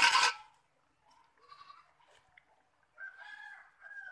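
Farm animal calls: a loud, short call right at the start and a longer, fainter pitched call about three seconds in.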